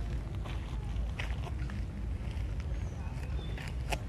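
Outdoor background: a steady low rumble with faint distant voices, scattered light clicks and rustles, and a sharper click near the end.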